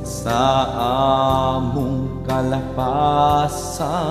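Visayan worship song: a sung melody with long held, wavering notes over steady instrumental backing.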